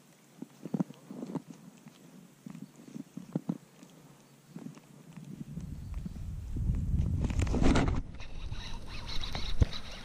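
Scattered light clicks and knocks from fishing tackle, then a building rumble of handling noise on a chest-worn camera, loudest about three-quarters through, as the angler swings the rod to set the hook on a bass.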